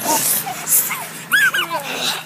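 Children's high-pitched squeals and yelps, with a pair of short rising-and-falling squeals about one and a half seconds in, over brief rustling noise near the start.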